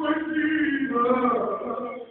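A man's voice chanting one long, drawn-out phrase that starts suddenly, slowly falls in pitch, and breaks off just before the end.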